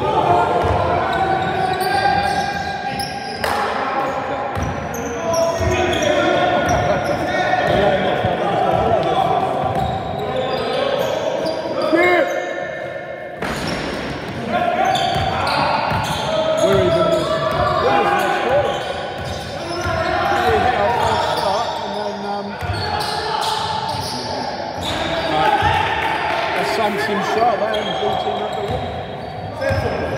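Basketball game in a large, echoing sports hall: the ball bouncing on the wooden court over and over, sneakers squeaking, and indistinct shouts from the players.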